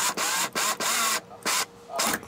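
A screwdriver driving an extra-long screw into a Land Rover Defender's A-pillar trim channel, heard as three short bursts of scraping, grinding noise as the screw is turned home.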